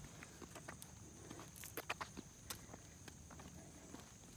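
Faint footsteps and shoe scuffs on a concrete sidewalk, with a few sharper taps about halfway through.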